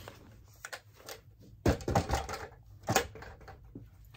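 Things being handled and put away: faint rustling, a cluster of knocks and clacks about two seconds in, and a sharp click about a second later.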